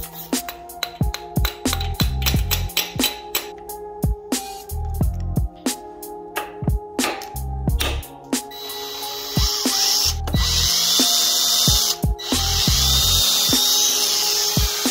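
A cordless drill boring into a broken bolt in a BMW M54B25 engine block. It starts about eight seconds in and runs with a whine that bends up and down, stopping briefly twice, over a background hip-hop beat. The bit has slipped off the bolt and is going into the block itself.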